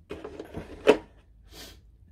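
A small figure accessory being handled and set back into a moulded plastic packing tray. There is a short stretch of plastic rustling and knocking that ends in one sharp click about a second in, then a brief soft rustle.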